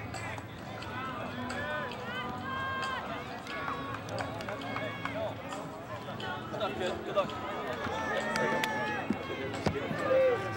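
Indistinct chatter of several people talking at once, with no clear words, in the open air of a stadium.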